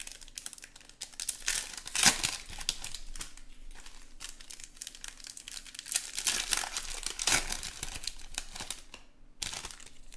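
Foil wrappers of 2020 Bowman Chrome baseball card packs crinkling and tearing as they are peeled open by hand. The irregular crackles are loudest about two seconds in and again after seven seconds, with a short lull near the end.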